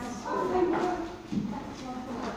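Several people chatting in a large hall, with footsteps on a wooden floor.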